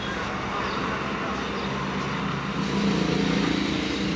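Street noise with a motor vehicle's engine running, getting louder about three seconds in.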